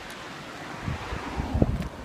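Wind buffeting a handheld camera's microphone: a steady rush with low gusts that grow stronger about a second in.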